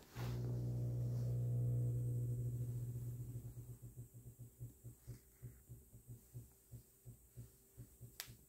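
A low steady hum with overtones, fading after about three seconds into soft low pulsing about three times a second.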